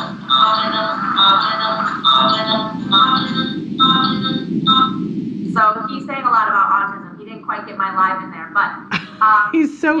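Fisher-Price BeatBo robot toy playing its song through a small built-in speaker: a bouncy electronic tune of short notes for about the first five seconds, then an electronic voice singing words that glide up and down in pitch.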